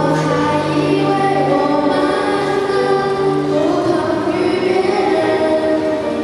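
A girl singing a song into a microphone over a karaoke backing track, holding long notes.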